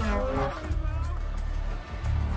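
Race car engine passing with a falling pitch in the first half-second, under music with a steady low bass.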